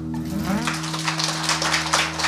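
The final chord of a nylon-string classical guitar rings out, and about half a second in, audience applause breaks in and carries on over it.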